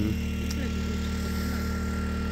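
A steady, low mechanical hum, like a motor running, with one short click about half a second in.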